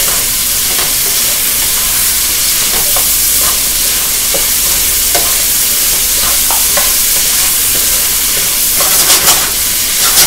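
Cubed chicken breast frying and sizzling in a hot pan with a steady hiss, stirred with a wooden spatula that scrapes and taps the pan now and then, more often near the end.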